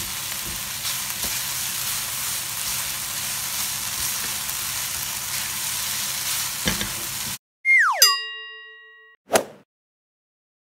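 Instant noodles sizzling as they are stir-fried in a nonstick wok, with a few light taps of the spatula; the sizzling cuts off suddenly about seven seconds in. A falling tone with a ringing chime follows, then a short whoosh, a transition sound effect.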